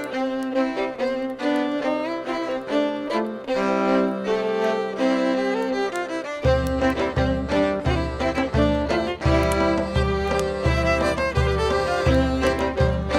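Live klezmer band playing a Hanukkah tune, the fiddle carrying the melody over accordion. About six seconds in, a low, steady beat joins, roughly one and a half strokes a second.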